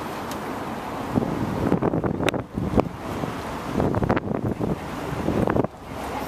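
Wind buffeting the microphone on the open deck of a moving tour boat, coming in irregular gusts from about a second in, with a couple of sharp clicks near the middle.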